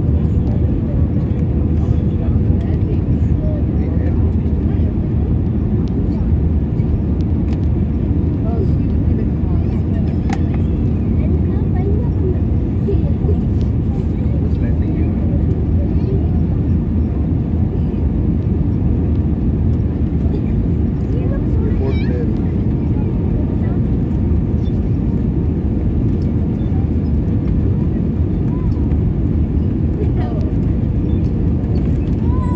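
Airliner cabin noise: the steady, even rumble of the engines and airflow, with a faint steady hum above it.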